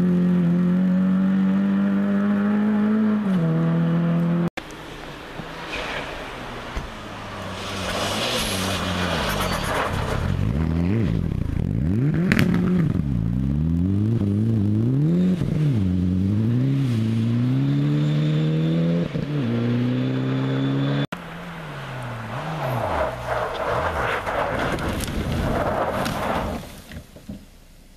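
Rally car engines on a snowy stage, one car after another. First an engine held at a steady high note as a boxy red sedan pulls away. Then a Mitsubishi Lancer Evolution's engine revving up and down again and again as it slides through the junction, over the scrape of tyres in snow and gravel. Near the end an Opel Astra comes in with a rougher engine note and a rush of thrown snow.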